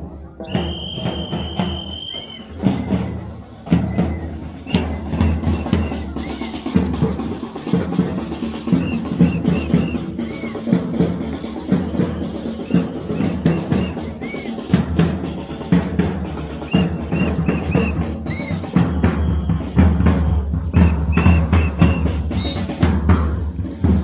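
Drumming by a group of marchers: bass and snare drums beating a dense, steady rhythm. A high, held tone sounds for about two seconds near the start.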